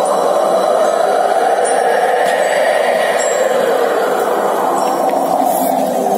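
A wind-like whooshing sound effect played over loudspeakers, swelling and then easing, with faint high tinkling chimes above it.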